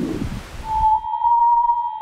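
Parker Solar Probe plasma-wave recordings turned into sound: a hissing rush from the dispersive chirping waves fades out about a second in. A steady high tone near 1 kHz, the Langmuir waves, overlaps it from about half a second in.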